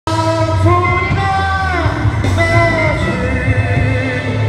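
A man singing a gospel song through a microphone over amplified instrumental accompaniment with a strong bass. He holds long notes that slide downward at the ends of phrases, twice.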